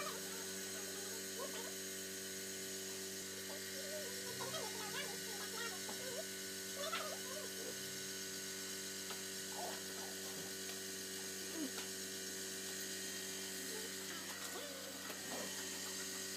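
A steady low machine hum, with faint indistinct voices murmuring underneath.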